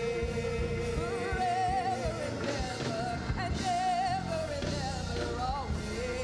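Gospel praise-team singing: women's voices, a lead singer holding long notes with vibrato, over instrumental accompaniment.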